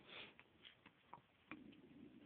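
Faint rustling and soft ticks of paper pages being turned in a thick paperback book, with two soft swishes of a page, one near the start and one about one and a half seconds in.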